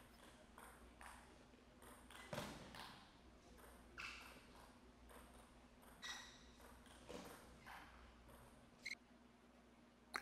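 Table tennis ball being hit back and forth in a rally: faint, sharp pocks of the ball on the paddles and the table, about seven, roughly one a second at an uneven pace.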